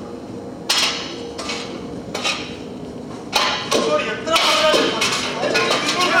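Metal tools clanging, with a few separate ringing strikes. From about three seconds in, the strikes come faster and overlap with shouting voices.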